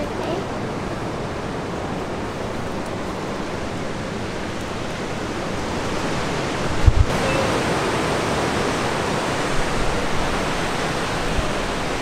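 Steady rushing of ocean surf breaking below the cliffs, mixed with wind. There is a brief low thump about seven seconds in.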